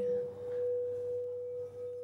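Frosted crystal singing bowl ringing with one steady, sustained tone and a faint higher overtone.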